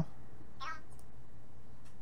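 A single short, high-pitched cry about half a second in, over a steady low background hum.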